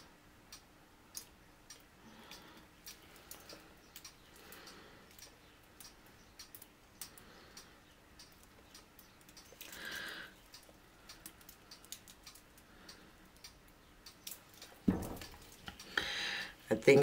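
Faint, scattered light ticks and taps as a wet-poured canvas is tilted in gloved hands over a plastic-covered table, with a short rustle about ten seconds in and a soft knock about a second before the end.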